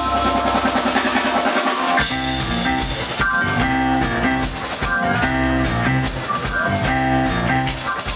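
A jazz-funk band playing live, heard from the audience: a held chord over a sustained bass note, then about two seconds in the drums and bass pick up a steady groove under guitar and keyboard chords.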